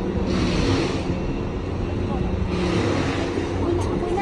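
A steady low mechanical hum under faint talk, with two swells of rushing noise, one near the start and one in the second half.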